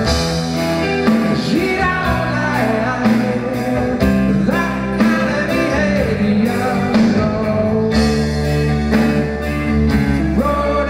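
Live rock band playing: a man singing with acoustic guitar strummed over a steady drum beat of about two beats a second.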